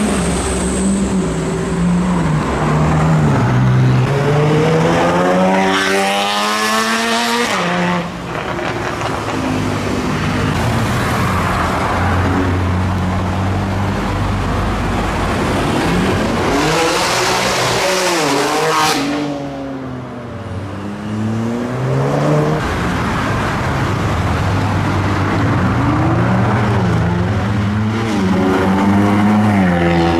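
Sports car engines revving hard as the cars accelerate past in traffic: three runs of steeply climbing engine pitch, the first cutting off about eight seconds in, the second near nineteen seconds and then falling away, the third building toward the end.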